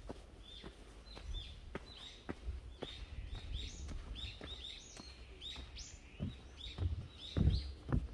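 Small birds chirping: quick high chirps, several a second, some overlapping. Under them come regular footsteps on a dirt path, with a few heavier low thumps in the last second or so that are the loudest sounds.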